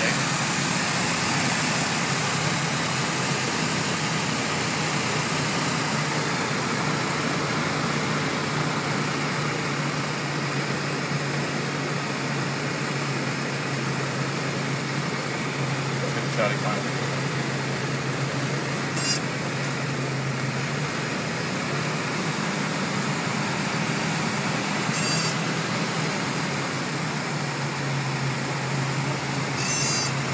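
Single-engine light aircraft's piston engine and propeller running steadily, heard from inside the cockpit with airflow noise over the cabin; the engine note weakens for a few seconds past the middle and comes back near the end as power is adjusted on final approach. A few short clicks sound now and then.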